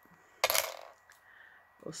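A small metal charm stitch marker clinking as it is set down on a hard surface: one sharp clink about half a second in that rings briefly, then a faint tick.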